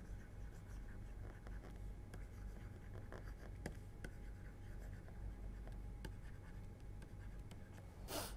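Faint scratching and light taps of a stylus writing on a tablet, over a low steady hum.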